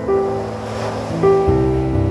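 Solo piano playing slow, sustained notes, with a few new notes struck along the way. The wash of ocean surf swells beneath it about a second in.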